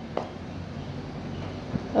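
A pan of thickened sauce simmering on the stove, a steady low noise that slowly grows louder, with one short knock a moment in.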